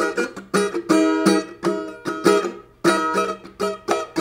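Giannini cavaquinho with a Brazilian-wood body, strummed in a rhythmic pattern of chords, several strokes a second.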